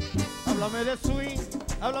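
Live merengue band playing, with the singer coming in on a sung line near the end.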